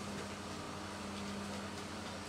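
Room tone: a steady low hum over a faint even hiss, with no distinct events.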